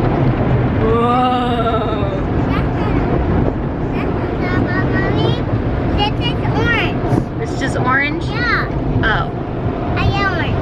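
Steady road and engine rumble inside a moving car's cabin, with a toddler's high voice making short, untranscribed sounds about a second in and again from about four seconds on.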